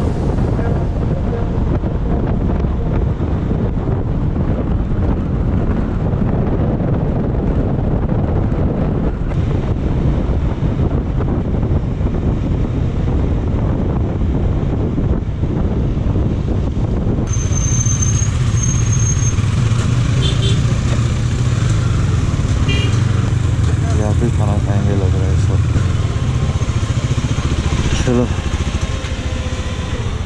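Motorcycle ride heard from the rider's own bike: the KTM Duke 390's single-cylinder engine running under way under heavy wind rumble on the camera microphone. About halfway through the sound changes abruptly and becomes clearer, with a few short high beeps.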